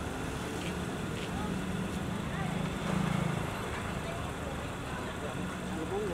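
Outdoor street ambience: indistinct voices over a steady low hum of vehicles, the hum swelling briefly about three seconds in.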